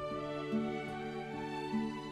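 Slow instrumental acoustic guitar music, with a new plucked note about every half second over a held low note.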